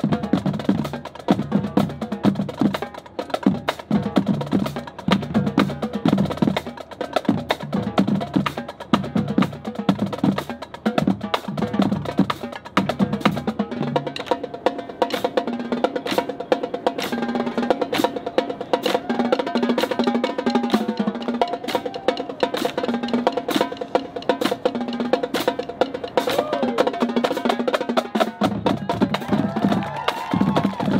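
Marching band playing a percussion-heavy passage, with rapid sharp strokes from drums and mallet percussion throughout. The low notes drop out about halfway through and come back near the end, while higher pitched notes carry on over the percussion.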